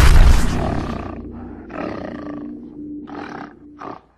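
Animal roar sound effect over a low held music tone, fading through the first second, followed by three shorter roaring bursts. It stops abruptly at the end.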